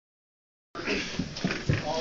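The recording cuts in after a short silence, then people speaking in a small room, with a couple of short bumps from the camera being handled.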